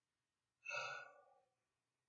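A woman's single short sigh, starting sharply about half a second in and fading out over about a second.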